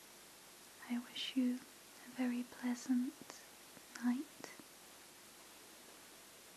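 A woman's soft, hushed voice saying a few short words, between about one and four and a half seconds in.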